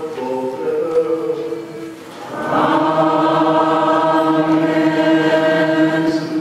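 Maronite liturgical chant: voices chanting a moving line, then from about two and a half seconds in several voices sing one long held note.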